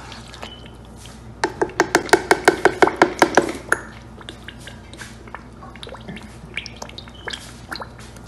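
A cooking spoon knocking rapidly against a large stew pot, about six or seven strokes a second for a couple of seconds. Around it, scattered small pops and ticks from the thick tomato stew base simmering in the pot.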